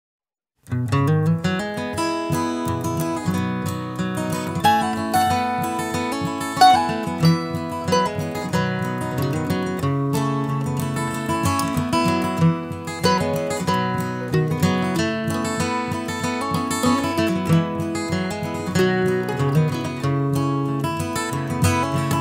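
Instrumental song intro led by acoustic guitar, with quickly picked and strummed notes in a country style. It starts just under a second in.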